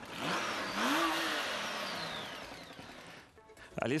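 A motorcycle engine revving up, its pitch climbing over about the first second and then holding, as it pulls away and fades out over the next two to three seconds.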